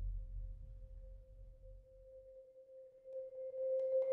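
A single marimba note sustained in a soft roll, one steady tone that swells louder near the end. Underneath, a deep rumble from the electronic backing track fades out about halfway through.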